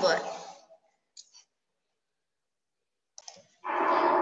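A couple of faint, short clicks from a computer mouse about a second in, amid a pause that is otherwise near silent.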